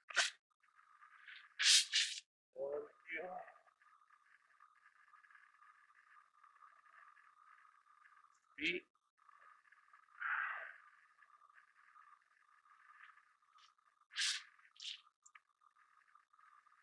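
Tent pegs being pulled from sandy ground and handled: a few short scrapes and rustles, spread out with long quiet gaps, over a faint steady high whine.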